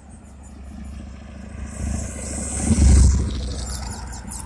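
Road traffic passing close by: a vehicle's engine rumble and tyre hiss build up, peak loudly about three seconds in as it goes past, and then fade.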